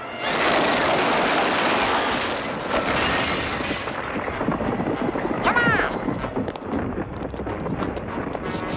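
Cartoon storm sound effect: a loud rush of wind that settles after about three seconds into a lower, rumbling gusting. About halfway through there is a brief high wail.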